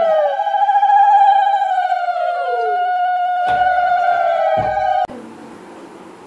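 Several conch shells (shankha) blown together in long, steady notes, each dropping in pitch as its breath runs out. Two knocks come near the end, just before the sound cuts off suddenly.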